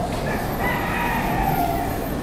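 A rooster crowing once, one drawn-out call lasting about a second and a half, over a steady low room hum.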